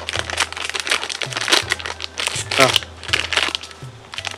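A product packet's wrapping crinkling and rustling in irregular bursts as it is handled, with a short spoken "ah" near the end.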